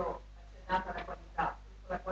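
Faint, distant speech: a person talking away from the microphone in short broken phrases, heard with the room's echo.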